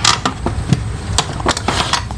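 A power cable being handled and plugged into the printer, with a few light clicks and taps, over a steady hum of road traffic from outside.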